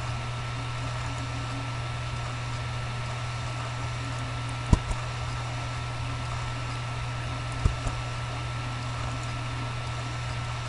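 Computer mouse button clicking in two quick double clicks, one about halfway through and one near three-quarters, over a steady low electrical hum with a thin steady whine.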